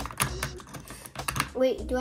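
Plastic ratchet of a toy monster-truck launcher clicking as a small die-cast truck is pushed back into it to cock it for a race: a quick run of sharp clicks, the launcher being set by its clicks to launch power.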